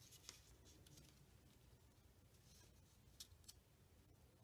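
Near silence, with a few faint rustles and light taps of cardstock pieces being slid and set down on a paper layout, once near the start and twice near the end.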